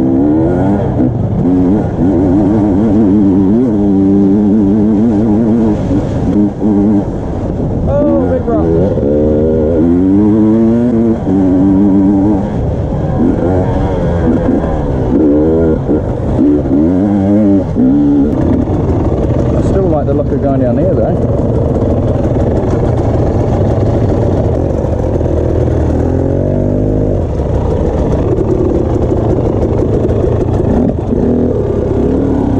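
Dirt bike engine heard close up from the rider's own bike, revving up and down over and over as it is ridden along a rough hillside track; the revving settles to a steadier note in the later part.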